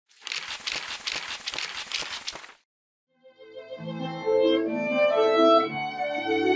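A paper-rustling page-flip sound effect with quick clicks, about four a second, for the first two and a half seconds, then a brief silence. A violin with piano accompaniment then comes in, playing slow held notes.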